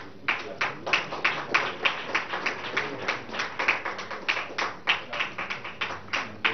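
Audience clapping in time together, an even beat of about three claps a second.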